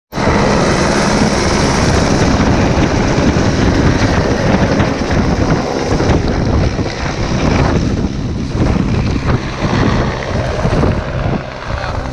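Helicopter taking off at close range, its rotor noise mixed with heavy wind buffeting on the microphone from the downwash. The sound becomes less harsh after about six seconds as the helicopter climbs away, and it drops a little near the end.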